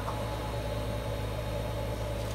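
Steady low electrical hum with an even hiss over it, unchanging throughout.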